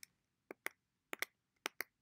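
Computer clicks, as slides are stepped through: three quick pairs of sharp clicks about half a second apart, with nothing between them.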